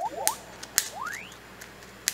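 A couple of sharp pops as a chopstick punches holes in a plastic bag of peeled garlic, with a short rising whistle in the middle.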